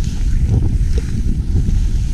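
Wind buffeting a handheld GoPro's microphone as a skier runs down a snow slope, a loud rough rumble mixed with the rush of skis over the snow.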